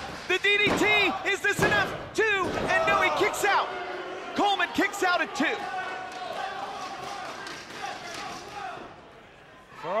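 Sharp slaps and thuds on the wrestling ring, mixed with loud shouted voices, busiest in the first few seconds and again around five seconds in, then dying down near the end.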